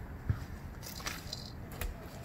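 A few faint, soft thuds and crunches as a bocce ball is swung and thrown from bark mulch onto grass, with no single loud impact.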